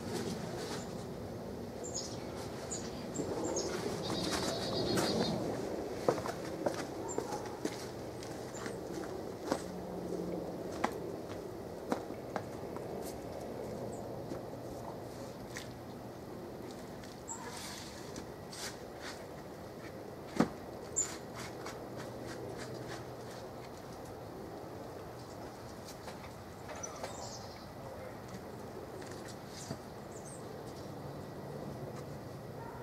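Homelite electric log splitter's motor humming faintly in spells of a few seconds, with scattered sharp knocks and clicks as logs are worked; the loudest knock comes about two-thirds of the way through. Birds chirp now and then.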